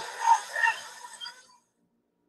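Police body-camera audio fading out: a noisy rush with a few brief voice fragments, dying away about a second and a half in and giving way to silence.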